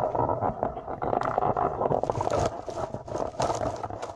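Camera handling noise: continuous rubbing and scraping against the microphone as the camera is moved and set back down. There are sharper scrapes about two seconds in and again about three and a half seconds in.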